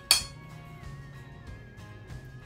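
A single sharp metallic clink from a metal baking sheet being knocked, with a brief high ring, just after the start, over steady background music.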